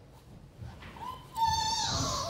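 Quiet for about a second, then a high, voice-like call starts and holds one steady pitch, growing loud in the last half second.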